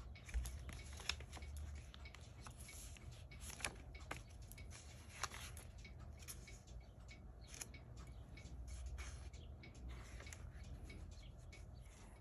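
Faint rustling and crackling of paper as the pages of a thick planner, stuffed with taped-in photos and magazine cutouts, are turned by hand, with many small scattered clicks. A low steady hum runs underneath.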